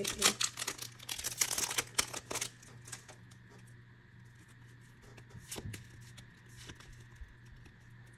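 Foil booster pack wrapper crinkling and tearing as it is pulled open and the cards slid out, a dense crackle over the first couple of seconds. After that, only a few scattered light clicks from the cards being handled.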